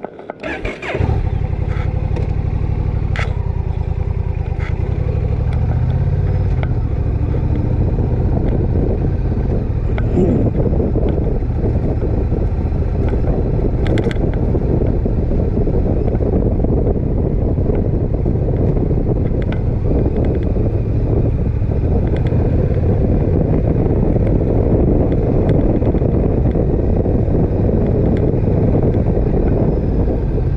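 Motorcycle engine running steadily under way, a loud low drone that comes in suddenly about a second in and then holds.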